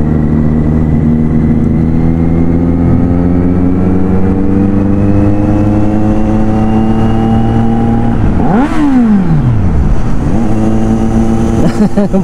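Kawasaki Z900 inline-four engine pulling under acceleration, its note rising slowly and steadily. About nine seconds in the note breaks with a quick drop in pitch, then carries on steadier.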